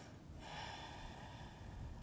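Faint, slow breath of a person holding a yoga pose, a steady rush of air that comes in about half a second in.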